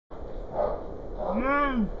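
A man's drawn-out call to a dog, rising then falling in pitch, near the end, over a low background rumble.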